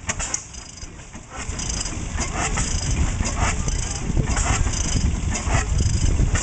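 Superior oil field engine, a single-cylinder horizontal stationary gas engine with heavy flywheels, running slowly with a beat about once a second that grows louder about a second in.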